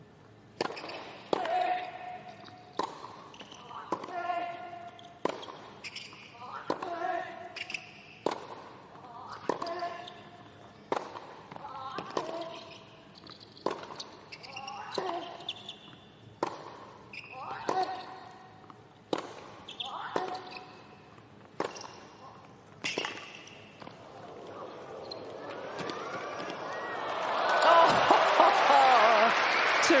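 Tennis rally: racket strikes on the ball, about one every 1.3 s, most of them with a player's short grunt. Near the end the crowd's cheering and applause swell up loudly as the point is won with a sliced passing shot.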